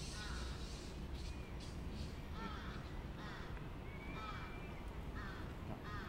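Crows cawing several times, each call a short arched note, over soft scratching of a marker writing on a whiteboard.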